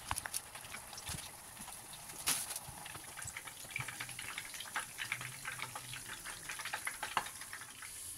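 Egg chicken roll slices frying in oil in a pan over a low flame, the oil sizzling with a steady hiss and many small irregular crackles and pops.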